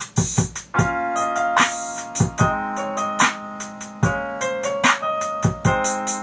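Playback of an unfinished song demo: a drum track with a simple piano part of chords and melody laid on top, kicking in suddenly.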